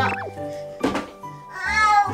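A toddler's high-pitched, whiny vocal protest in short sliding cries, over background music, with one sharp knock about halfway through.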